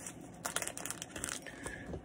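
Crinkling of a fly-tying material packet being handled, a run of sharp crackles mostly between about half a second and a second and a half in.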